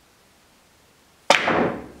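A pool cue strikes the cue ball hard with one sharp crack a little over a second in, followed at once by a short clatter of balls colliding and running across the table that quickly dies away.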